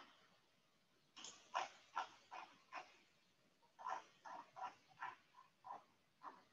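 A dog barking faintly: short single barks in two runs of five or six, roughly two to three a second, with a pause of about a second between the runs.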